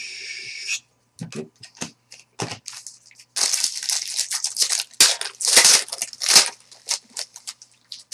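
Foil trading-card pack wrappers being torn open and crinkled: short scattered rustles, then about three seconds of denser, louder tearing and crackling in the middle, then scattered rustles again.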